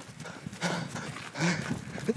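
Footsteps of a person running over snow, a rapid uneven patter of footfalls.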